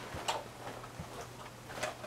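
A few light clicks and knocks spread out over two seconds, with one low thump about a second in, as an interior door is opened and someone steps through it.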